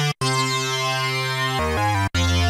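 Korg minilogue xd analog polysynth playing a lead patch with its multi engine's Decay oscillator mixed in: one held note, then quicker, lower notes near the end, each cutting off abruptly.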